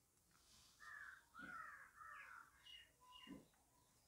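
Near silence with faint, distant bird calls: about five short calls spread across a few seconds.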